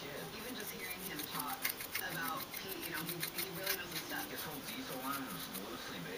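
A small paintbrush scrubbing weathering onto the plastic shell of an HO-scale model locomotive: rapid short scratchy strokes, several a second, for most of the stretch.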